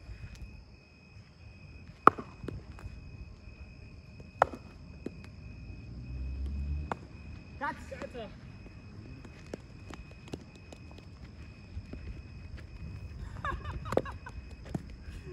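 Cricket bat striking a cricket ball twice for slip-catching practice, sharp knocks about two seconds in and about four and a half seconds in, the first the louder.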